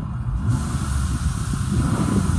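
Chevy Uplander's 3.5-litre V6 engine revved up from idle, heard from inside the cabin: the engine note climbs about half a second in and holds at the higher revs. It runs smoothly, revving up nice.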